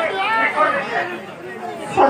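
Several people talking at once, a chatter of voices.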